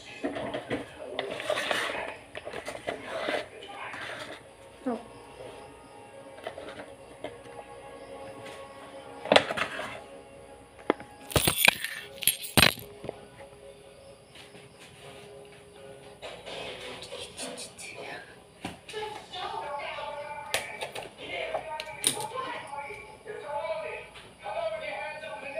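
Background music, with light handling clatter of a plastic bottle and funnel. Near the middle come two or three sharp snips, about a second apart, of scissors cutting open a plastic refill pouch.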